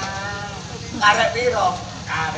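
A man's voice through the stage microphones: a drawn-out, wavering vocal sound, then a louder burst of speech about a second in.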